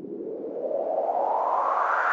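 A synthesized noise sweep rising steadily in pitch and growing louder throughout: an electronic riser building into the start of a track.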